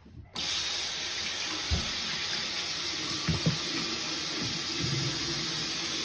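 Bathroom sink tap turned on about a third of a second in, then water running steadily into the basin.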